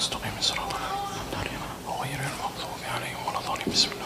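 Quiet, whispered speech with hissing s-sounds, low under the microphone.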